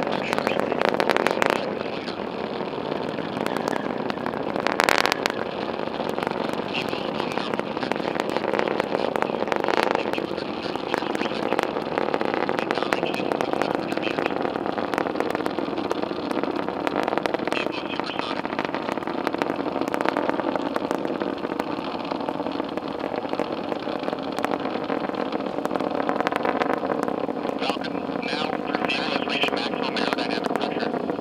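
Distant rumble of the Falcon 9's nine Merlin first-stage engines, heard from miles away as a steady roar broken by sharp crackles, the strongest about a second and about five seconds in.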